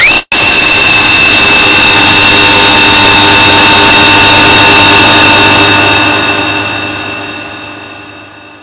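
Extremely loud, overdriven noise with several steady high whining tones, as in a deliberately distorted 'earrape' edit. It drops out for an instant just after the start, runs on evenly, then fades out over the last two seconds.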